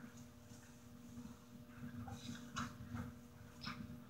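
Faint rustling and a few light crackles as a headband with a folded-paper fan is handled and slipped on, over a steady low hum.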